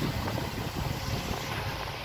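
Steady noise of a tour boat under way: low engine rumble mixed with wind and water rushing past.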